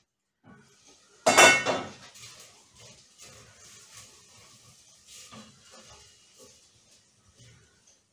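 A stainless steel pot lid clanks loudly once, about a second in, then a silicone spatula stirs chopped asparagus and onion in the pot with soft, irregular scraping and knocking.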